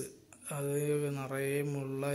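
A man's voice in long, level-pitched phrases, like chanting, starting about half a second in after a brief pause.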